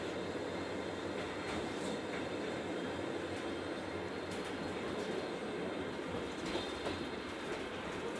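Roslagsbanan narrow-gauge electric commuter train running, heard from inside the carriage: a steady rolling rumble of wheels on rail with a few light clicks scattered through it.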